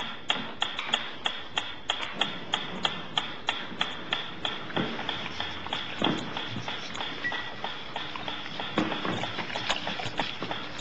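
Clockwork metronome ticking steadily, about three ticks a second, sounding as the signal that food is coming.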